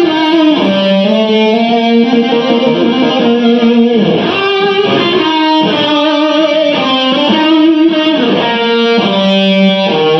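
Distorted electric guitar played live, long held notes that change every second or two.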